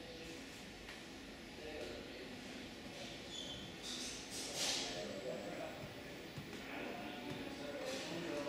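Faint, indistinct background voices murmuring, with a short hiss a little past halfway.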